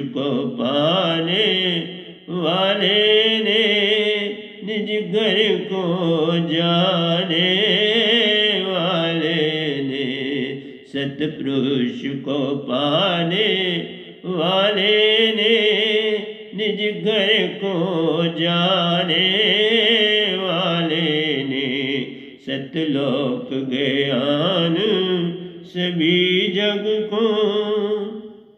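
A man singing a Hindi devotional bhajan in long drawn-out phrases whose pitch glides up and down, with short breaks for breath between them.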